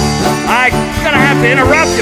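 Country-style band music: an instrumental passage with a steady bass line under a lead melody that slides up and down in pitch.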